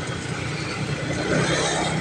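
Steady outdoor street noise with a low hum under it, and faint voices from a group walking along the road.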